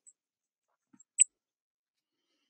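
Near silence, broken about a second in by one very short, high-pitched click or squeak.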